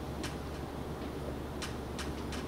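Dry-erase marker writing on a whiteboard: two short, sharp high-pitched strokes, one just after the start and one near the end, over a low steady room hum.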